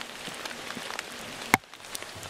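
Light rain pattering on leaf litter and standing water, with one sharp click about one and a half seconds in.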